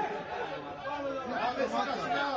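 Men's voices talking over one another, a steady chatter of conversation close to the microphone.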